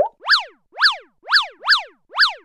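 Cartoon-style sound effects of a logo animation: four quick chirps, each sweeping up and then down in pitch, about two a second.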